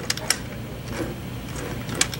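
Light metallic clicking from a motorcycle transmission's gears and shift mechanism as the shafts are turned by hand to select a gear, the shift cam detent working as designed. A few sharp clicks come close together near the start, with fainter ones later.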